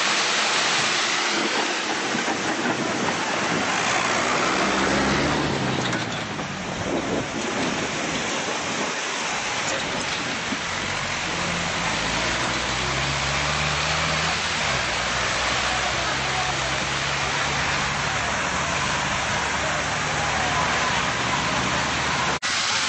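Wheat stubble fire burning, a dense, steady crackling hiss. About halfway in, a tractor engine runs low beneath it.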